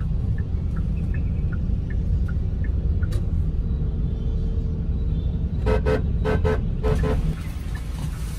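Low, steady rumble of a moving vehicle in heavy street traffic, with a quick run of short vehicle-horn toots, about six in pairs, beginning a little under six seconds in.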